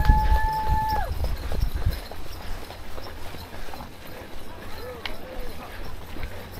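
A horn sounds once, a steady tone held for about a second: the race start signal. Runners' footsteps on grass and the camera-wearer's own stride follow, with a few voices.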